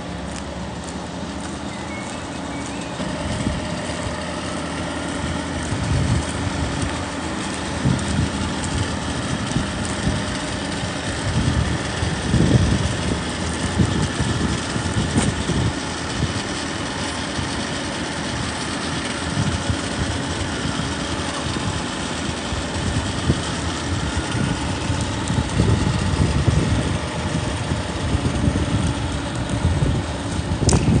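Small snow-sweeping vehicle with a rotary brush running, its engine a steady low hum. From a few seconds in, irregular low rumbles of wind on the microphone join it.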